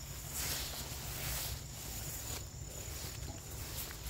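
Rustling footsteps swishing through tall grass close to the microphone, over a steady low rumble, with a faint thin high insect tone behind.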